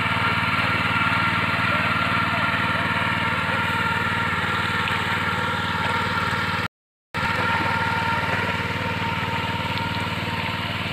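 Engine of a walk-behind power tiller running steadily under load as it ploughs wet paddy mud. The sound cuts out to silence for a moment about seven seconds in.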